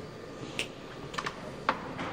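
Footsteps on a hard stone floor: a few sharp taps about half a second apart, over a steady background hiss.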